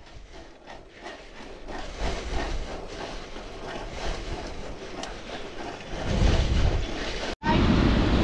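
Riding a bicycle on a paved path: wind on the GoPro microphone with tyre and bike noise, growing louder about six seconds in. Near the end the sound cuts out for an instant, then louder wind and surf noise comes in.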